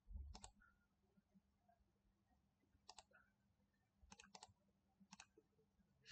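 Faint clicks of a computer mouse button, in quick press-and-release pairs several times, over near silence, with a soft low thump right at the start.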